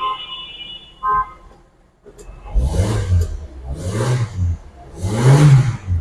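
A freshly overhauled Toyota LiteAce Noah engine starting about two seconds in and then revved three times, each rev rising and falling in pitch, the last the loudest. Two brief tones sound before it.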